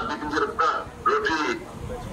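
A man speaking into a microphone, his voice carried over a public-address loudspeaker with a nasal, honking tone; it trails off near the end.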